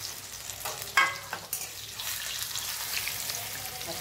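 Besan-coated capsicum pieces sizzling steadily in hot oil in a kadhai, with one sharp clink about a second in.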